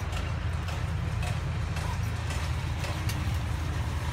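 Minibus engine idling, heard from inside the cabin as a steady low rumble, with a few faint clicks at uneven intervals.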